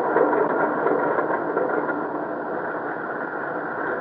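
Radio sound effect of a fighter plane's engine running and slowly dying away after the pilot is told to cut his motor, heard on an old, narrow-band broadcast recording.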